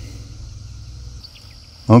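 Quiet outdoor field ambience with a faint low rumble, joined about a second in by a faint, steady, high-pitched insect drone. A man starts speaking at the very end.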